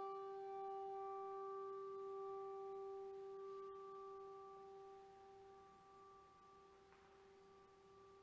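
The ring of a single bell stroke: one steady, clear tone with overtones, slowly fading away.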